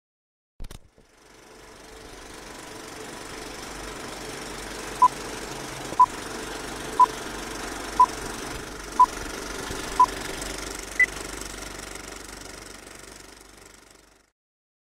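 Old film-leader countdown sound effect: a click, then a movie projector's running clatter fades in. Over it come six short beeps a second apart, then one higher beep a second later, and the clatter fades out near the end.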